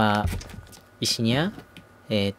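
A man speaking in short phrases, with light clicks and crinkles of a plastic bag of takoyaki flour being handled and set down.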